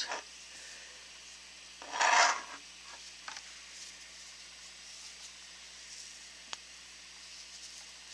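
Yarn rubbing and rustling against fingers and a crochet hook as a magic ring is wound. There is one louder rustle about two seconds in, then soft scratching and a single faint click.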